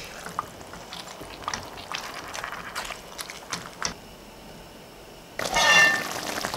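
Chicken and tomatoes simmering in a stainless-steel pot, with scattered small pops and bubbles. A louder, denser stretch starts shortly before the end.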